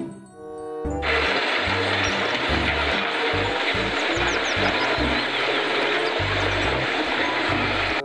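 Background music with a pulsing bass. From about a second in, the steady noisy rumble of an old road roller running over loose crushed stone cuts in suddenly and continues under the music.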